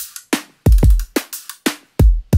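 Electronic trap drum beat playing back: deep bass-heavy kick hits, snare and quick metallic hi-hats, all synthesized in Ableton Live. Each hi-hat hit sounds slightly different from the one before because the frequency of a frequency shifter on the hats is automated.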